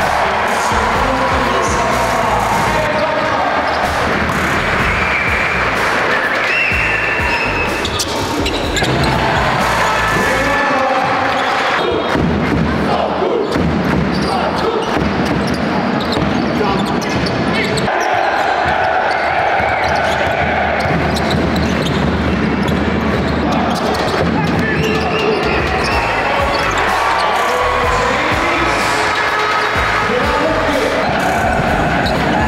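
A basketball bouncing on an indoor court during a game, with music and voices mixed in throughout.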